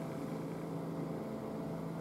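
Faint, steady low hum and hiss from the amplified stage sound as the song's final held chord dies away, cut off abruptly at the very end.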